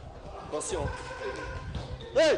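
Men's raised voices in a scuffle: short yells whose pitch rises and falls, about half a second to a second and a half in.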